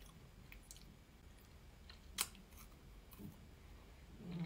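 Faint chewing of Kit Kat chocolate, with small scattered mouth clicks and one sharper click about halfway through.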